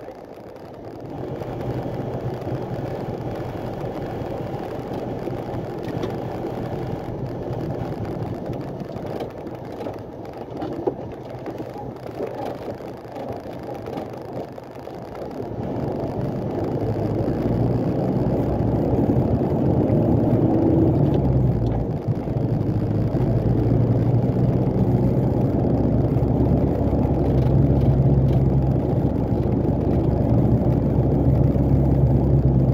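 Loaded truck's diesel engine heard from inside the cab, running steadily at low road speed. About halfway through it grows louder with a deeper hum as the truck pulls harder, easing off briefly about two thirds of the way through.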